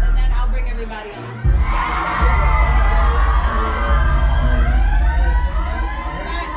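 Loud hip-hop track with heavy sub-bass; the bass cuts out about a second in and comes back about half a second later, with people's voices over the music.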